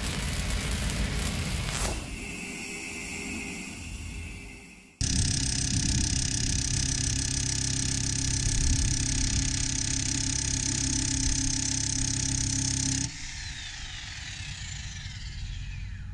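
Bosch SDS Max rotary hammer drilling into a concrete slab with rebar. It runs loud and steady for about eight seconds, then drops sharply to a quieter level as the bit is eased off. A short logo whoosh comes before it.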